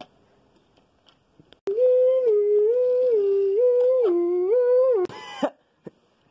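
A person humming a short tune with the mouth closed, about seven held notes stepping up and down, from a little under two seconds in to about five seconds, just after a sharp click. It ends in a short breathy burst.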